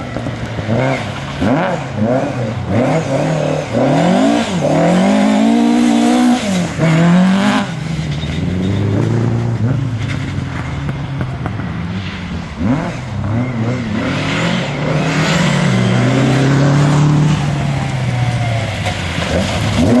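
Ford Escort Mk2 rally car engine driven hard on loose gravel. Its note climbs and drops again and again through gear changes and lifts off the throttle.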